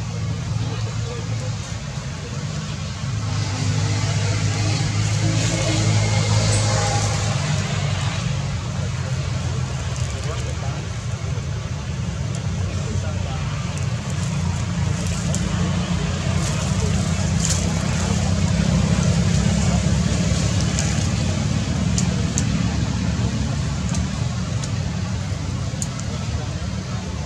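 A steady low hum, like a motor running, with people's voices in the background.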